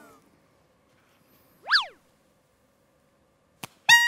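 Mostly quiet, broken about one and a half seconds in by one quick whistle-like tone that slides up and straight back down. Just before the end, after a click, a small green plastic toy horn sounds one loud, steady, bright note.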